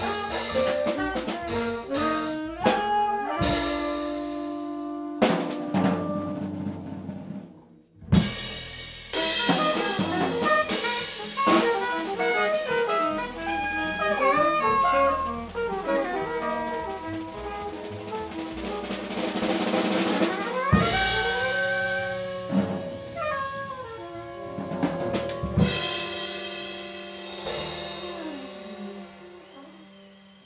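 Live jazz quartet of soprano saxophone, tenor saxophone, upright bass and drum kit playing. The band drops out briefly about eight seconds in, then comes back in and closes the tune on long held notes that fade near the end.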